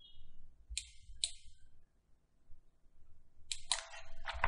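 Computer mouse clicks: two separate clicks about half a second apart near the first second, then two quick clicks close together near the end.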